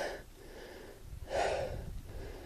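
A man's single audible breath, a short rush of air about a second and a half in, between sentences, over a faint low rumble.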